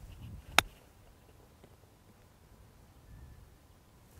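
A golf club striking the ball in a chip shot: one sharp click about half a second in.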